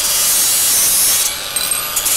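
Oxy-acetylene torch flame hissing steadily as it heats the polished tip of a tool-steel chisel to anneal it. The hiss loses its highest, sharpest part a little over a second in.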